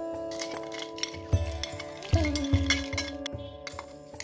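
Metallic clinks of a stainless steel plate knocking against a steel mixer-grinder jar as ingredients are tipped in, over instrumental background music with long held notes.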